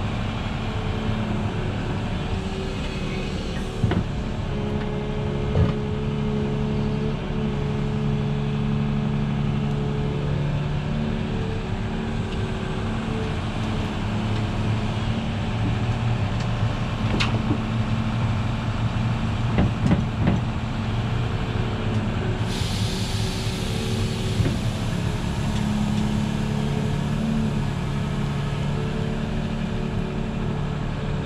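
Volvo EC380E excavator's diesel engine working under load, its pitch shifting as it digs, swings and dumps, with a few sharp knocks as the bucket loads dirt into the truck's trailer. A steady hiss joins suddenly about two-thirds of the way through.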